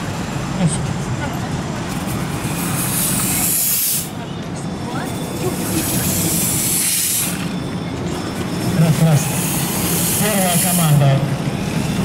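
Steam effect on a toy-locomotive kiosk venting with a hiss in three long puffs, each about two seconds, mimicking a steam train.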